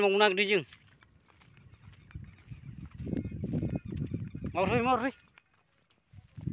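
A person's voice giving two drawn-out calls: a loud held note right at the start and a wavering one about four and a half seconds in. A low rumbling noise runs in between.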